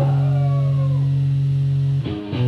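Live rock band letting a sustained electric guitar chord ring. Over it, a higher note slides down in pitch during the first second.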